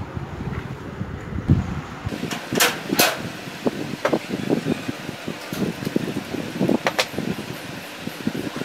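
Handling sounds of hands working a white PVC tube and a small wooden block on a table: short knocks and rustles, with sharp clicks around three seconds in and again about seven seconds in, over a steady background noise.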